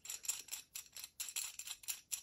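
Knurled knob on the threaded adjustment screw of a GUB Pro 3 all-metal bicycle phone mount being turned by hand. It gives a quick run of short scraping clicks, about four or five a second, as the clamp is opened wider.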